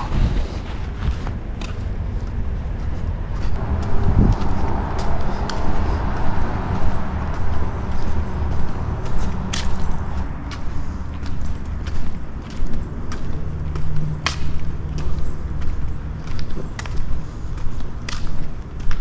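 A steady low rumble on a handheld camera's microphone while walking, with scattered footsteps and knocks from handling.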